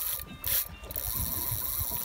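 A large saltwater spinning reel ratcheting under heavy load as a big fish pulls against the bent rod: the drag and reel mechanism are working against the fish's run.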